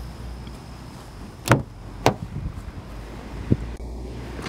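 Front door of a 2023 Kia Sorento being opened by its handle: a sharp latch click about a second and a half in, a second click about half a second later, and a smaller knock near the end.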